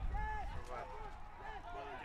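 Faint, distant shouts of players calling to each other on the pitch during an ultimate frisbee point, over a low outdoor rumble.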